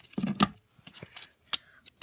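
Plastic snap-circuit pieces being unsnapped from the board by hand, with sharp clicks about half a second in and again about a second and a half in.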